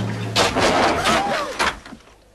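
A sudden slam about half a second in, followed by a loud noisy stretch with voices crying out that dies down near the end.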